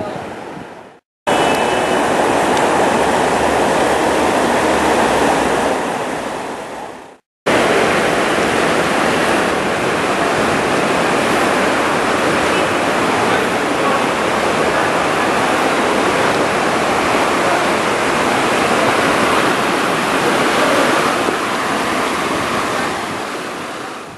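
Shallow stream running fast over rocks and around stepping stones: a steady rush of water. It fades out and breaks off twice, about a second in and about seven seconds in, each time starting again at full level after a short silence.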